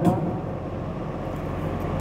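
Steady low background rumble with no distinct events; a man's word ends right at the start.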